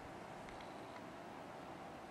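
Faint steady hiss with a thin, steady hum underneath: room tone with no distinct event.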